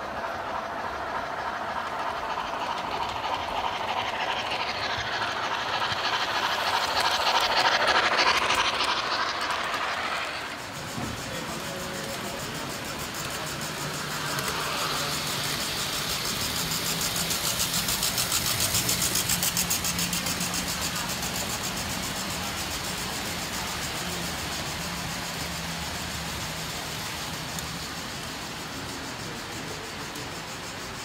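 Electric model trains running on tinplate layout track. For the first ten seconds a train's wheels and motor rumble as it comes by, growing louder to a peak about eight seconds in and then breaking off. After that a second train runs with a steady motor hum and rapid, even clicking of wheels on the rails, swelling and fading as it passes.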